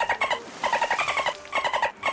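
Dolphin-like clicking chatter: three quick runs of rapid squeaky clicks, about fifteen a second, each lasting around half a second.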